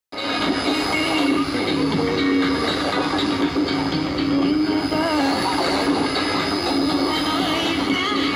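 Shortwave broadcast on 13775 kHz heard through a portable radio's loudspeaker: a steady rush of static and interference with a constant whistle, and a faint Arabic song coming through beneath the noise about five seconds in.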